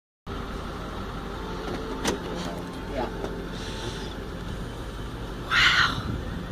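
Steady road noise of a car driving, a low rumble of tyres and engine heard from inside the cabin. It is broken by a couple of light clicks about two and three seconds in and a short, loud rush of hissing noise near the end.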